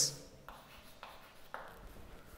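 A few faint chalk taps and a short scrape on a chalkboard, three soft sounds about half a second apart, in a quiet room.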